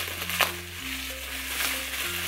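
Background music with held low notes that change pitch twice, over the rustle and crinkle of plastic bubble wrap being handled. A sharp click comes about half a second in.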